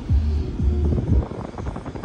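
Music with a heavy, repeating bass beat playing over the car stereo.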